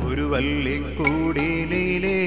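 A Malayalam drama song (nataka ganam): a man singing over instrumental accompaniment, with a steady low drone and occasional percussion strikes.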